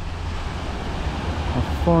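Small sea waves breaking and washing up a sandy beach, with wind buffeting the microphone as a low rumble.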